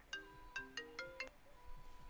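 Smartphone ringtone playing faintly: a quick melody of short, bright notes. It signals an incoming call, which is answered just afterwards.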